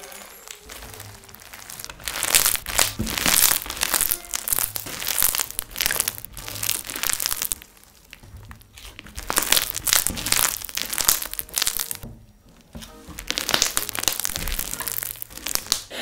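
Crunchy slime full of foam beads squeezed, stretched and pressed by hand, giving dense crackling and popping that pauses briefly about halfway through and again about three quarters through. Faint background music plays underneath.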